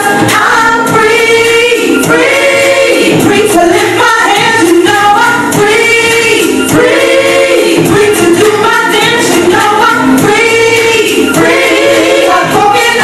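Recorded gospel hip-hop song playing loud, with layered sung vocals over the backing track.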